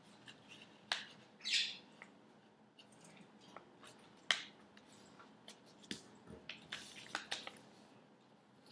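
Faint rustling and a few sharp clicks of a paper sheet being folded and creased by hand, with pet budgerigars chirping in the background.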